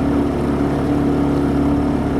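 Outboard motor pushing a small jon boat along at a steady speed: an even, unbroken engine drone with a strong steady hum.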